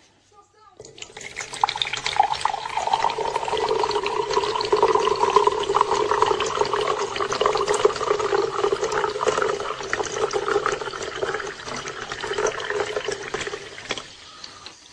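Water running steadily, like a tap pouring into a sink. It starts about a second in and stops just before the end.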